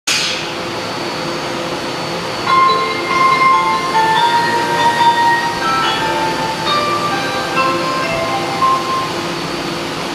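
Platform departure melody, a short sequence of chime notes starting about two and a half seconds in and lasting about six seconds, over the steady hum of a Ginza Line 1000-series subway train standing with its doors open.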